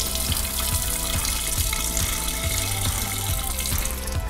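Triple sec pouring in a steady stream from an upturned bottle into a glass dispenser of liquor and orange slices, a continuous splashing hiss, with background music under it.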